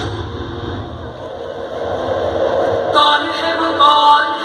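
Audience crowd noise through a brief pause in the stage music, then a song with long held vocal notes comes in over the sound system about three seconds in.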